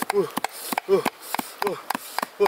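Two steel blades chopping rapidly on a flat stone slab, mincing a pile of small pieces, about four to five sharp strokes a second. Short falling voice sounds come in between the strokes.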